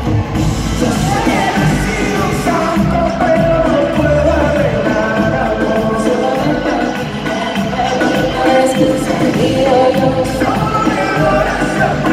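Live pop concert music from the audience: a woman singing into a microphone over the full band through the venue's sound system, loud and unbroken.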